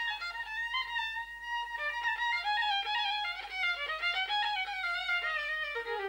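Solo fiddle playing a slow Irish traditional tune: a single bowed melody line of held notes.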